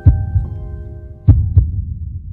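Heartbeat sound effect: deep double thumps, two beats about 1.3 s apart. Under them, the last held notes of music fade out.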